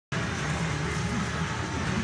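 Steady background noise with a low hum at an even level.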